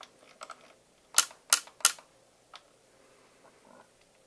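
YAG laser firing single pulses at vitreous floater fragments, each shot a sharp click. Three loud clicks come in quick succession a little over a second in, with a few fainter clicks before and after.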